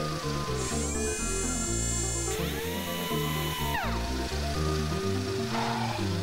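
Cartoon background music with a power-tool sound effect laid over it: a whine spins up about a second in, holds, and winds down with a falling pitch near four seconds in.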